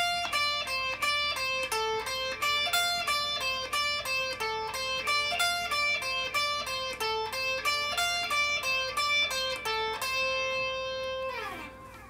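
Stratocaster-style electric guitar playing a repeating single-note D blues scale phrase in even eighth notes, moving between the 10th and 13th frets on the top two strings at about four notes a second. Near the end one held note rings out and slides down as it fades.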